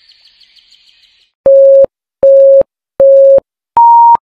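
Countdown beep sound effect: three identical mid-pitched beeps about three quarters of a second apart, then a fourth, higher beep near the end, the classic 'ready, set, go' start signal.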